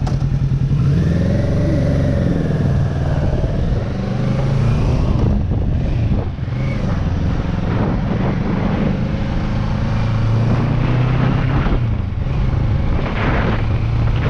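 Motorcycle engine pulling away from a standstill and accelerating through the gears, its pitch climbing and then dropping back at each upshift. Wind noise on the microphone builds near the end as speed rises.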